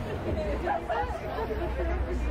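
Chatter of people talking close by, voices starting about a third of a second in, over a low steady rumble.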